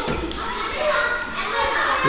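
Children's voices talking and playing over one another, with a dull thud just after the start.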